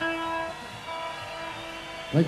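Quiet, sustained single notes from an amplified stage instrument between songs, the note changing every half second or so.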